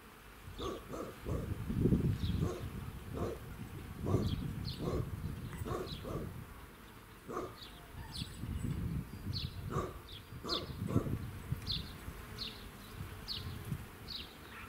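Birds chirping in short, high calls, repeated every second or so, over irregular louder low-pitched bursts.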